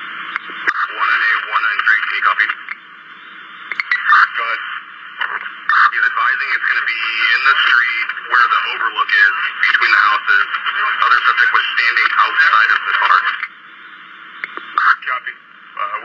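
Police dispatch radio traffic: voices over a narrow, hissy two-way radio channel. The talk breaks off near the end, leaving mostly static hiss with one short burst.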